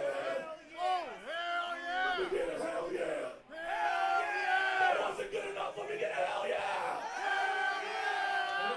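Several people yelling and whooping at once, long overlapping shouts that rise and fall, with a brief lull about three and a half seconds in.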